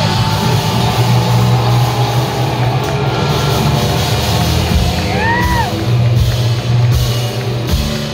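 Live rock band playing loudly: distorted electric guitars, bass and a drum kit, heard from the audience floor of a club. About five seconds in, one high note swoops up and back down.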